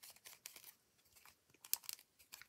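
Faint handling noise from a clear acrylic stamp block with a clear stamp mounted on it: a few light clicks and rustles, with a small cluster of ticks near the end.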